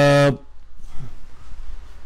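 A man's drawn-out hesitation 'uh', held on one level pitch for about half a second at the start, then a pause with only a faint low hum.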